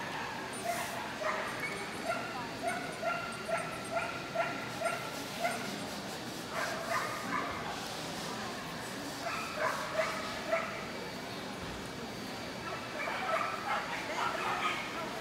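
A small dog yapping in a quick, even run of high barks, about three a second, then after a pause two shorter runs of yaps.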